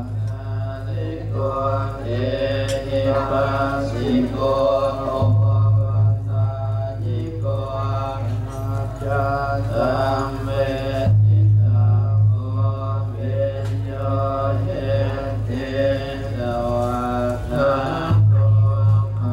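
Chanting in a repeating melody over a steady low drone that fades and swells.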